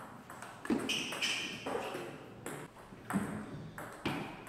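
Table tennis ball being hit by paddles and bouncing on the table in a rally. There are several sharp ringing pings, roughly half a second to a second apart.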